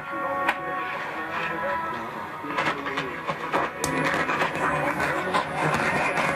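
AM broadcast music from the French-language station CBKF-2 on 860 kHz, played through a Hammarlund SP-600 receiver's speaker. Irregular scratchy crackles run over it: splatter from the 50 kW station 850 KOA on the adjacent channel.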